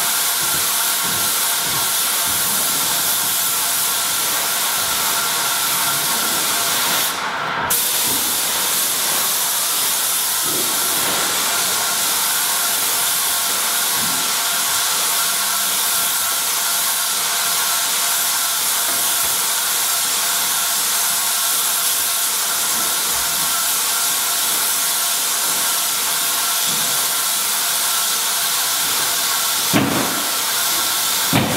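Airless paint sprayer's gun hissing steadily as it sprays PVA primer through a 1221 tip at about 2200 PSI, the trigger held down almost continuously. The hiss cuts out briefly about seven seconds in.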